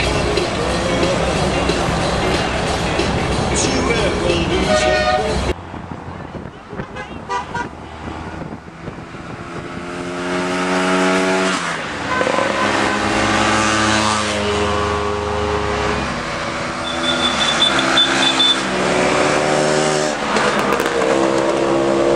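Car horns tooting in a run of long held notes at several pitches, starting about ten seconds in, over road and traffic noise from a convoy of cars. The first few seconds are busier traffic and crowd noise before a sudden change.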